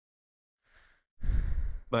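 A man's sigh close to the microphone: a faint breath in, then a heavy exhale about a second in, the breath rumbling on the mic.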